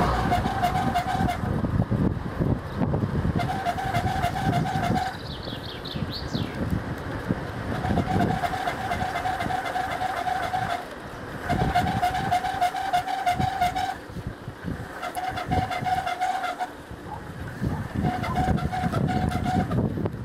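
Bicycle riding on asphalt: wind rumbling on the microphone and tyre noise, with a steady whine that comes and goes six times. A few short bird chirps about five seconds in.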